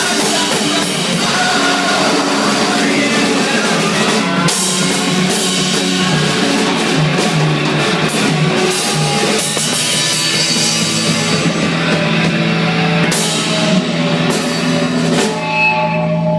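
Rock band playing live: electric guitars over a drum kit, loud and steady.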